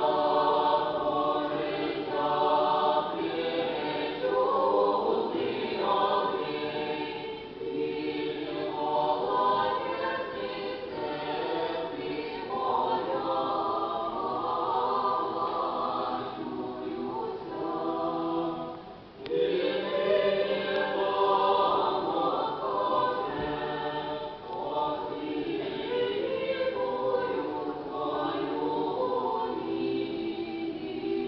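Small mixed church choir of men's and women's voices singing Russian Orthodox sacred music a cappella, in sustained chords. The sound dips briefly about two-thirds through as one phrase ends and the next begins.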